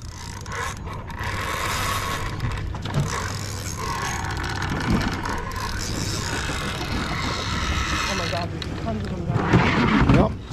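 Fishing reel being cranked, its gears whirring steadily as a hooked mahi is reeled in on a tight line. The whirring stops about a second before the end.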